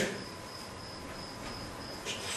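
A faint, high-pitched, insect-like chirping in a steady train of short pulses, about three to four a second, over quiet room tone.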